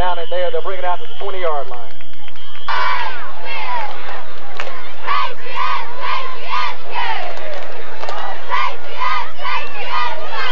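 Football crowd of spectators shouting and cheering, with voices close by in the first couple of seconds. About halfway through comes a run of short, repeated shouts.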